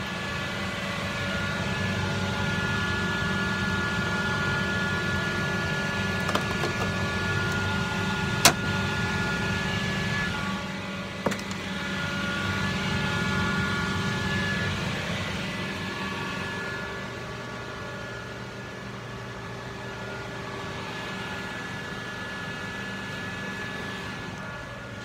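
Laser engraver running: a steady mechanical hum with several steady whining tones from its fans and motors, growing quieter in the last third. A few sharp clicks cut through it, the loudest about eight seconds in.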